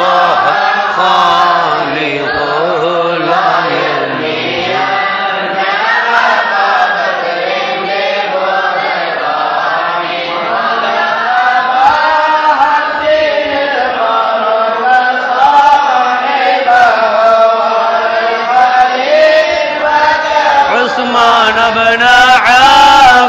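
Men chanting an Arabic mawlid poem in praise of the Prophet, sung as a slow melody of long drawn-out notes with no pauses.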